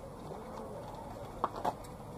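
A bird calling in a low, wavering note, over a steady outdoor hum; two sharp clicks about a quarter second apart near the end are the loudest sounds.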